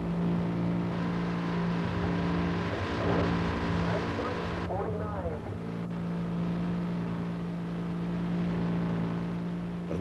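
Diesel locomotive engine running with a steady hum while pushing a snow spreader, with a rushing hiss of snow shoved aside by the spreader's steel wing that cuts off abruptly about halfway through.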